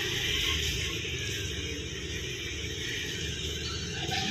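Steady hiss and low hum of running aquarium equipment, such as the tank's pump and moving water.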